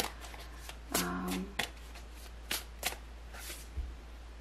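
Tarot deck being shuffled and handled by hand: a string of separate sharp card snaps and flicks, irregularly spaced, roughly two a second. A brief hummed vocal sound comes about a second in, and a soft low thump near the end.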